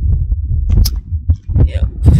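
Wind buffeting the microphone of a handheld camera, a heavy uneven low rumble, mixed with handling noise as it is carried while walking.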